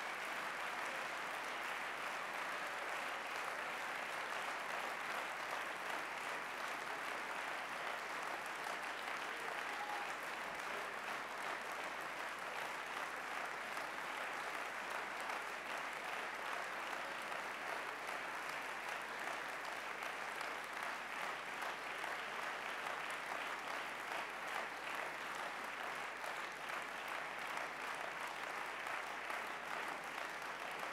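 Sustained applause from a large hall audience, many hands clapping steadily at the end of a speech, easing slightly near the end.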